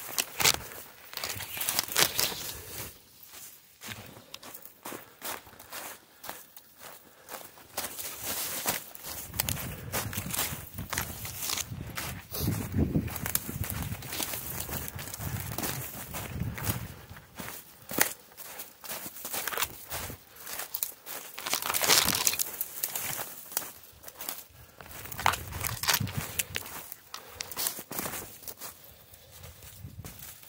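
A person walking briskly through deep, dry fallen leaves, the leaves crunching and rustling underfoot in an uneven run of steps.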